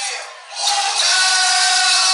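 Live hip hop performance over a PA, heard loud and thin with almost no bass: the sound dips briefly about half a second in, then comes back with steady held tones.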